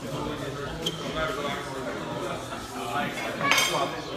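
Restaurant table clatter: cutlery and dishes clinking, with low chatter under it and a louder clink of tableware a little before the end.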